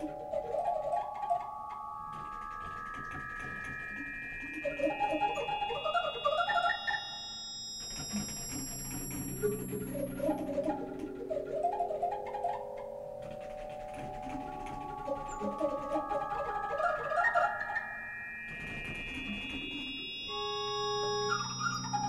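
Computer-controlled pipe organ, heard close up from inside its wind chests: runs of held pipe notes climb step by step to very high pitches, three times over, against rapid flurries of short, puffed notes and a few low sustained notes.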